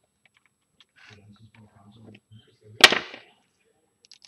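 Small clicks of RC car parts being handled, then one sharp, loud snap nearly three seconds in as the spur gear and slipper clutch plate are pushed onto their shaft.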